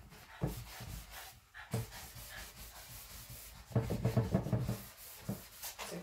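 Hand sanding with a 220-grit sanding block, rubbed in short, irregular strokes over a decoupaged wrapping-paper table top, with a busier run of strokes about four seconds in. The sanding scuffs the paper and paint to give the top a distressed look.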